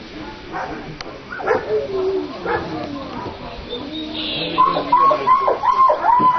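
A dog barking in a quick series, about three barks a second, starting about four and a half seconds in; voices are heard before the barking.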